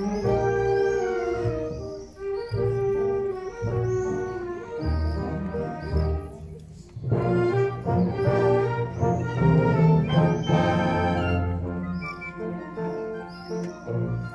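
A live symphony orchestra of strings and brass playing a classical piece. The sound thins briefly about halfway through, then swells into a fuller, louder passage.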